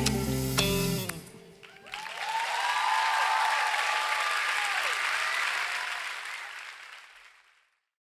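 A live band's final chord rings on and stops about a second in; after a short lull the audience breaks into applause and cheering, which fades away near the end.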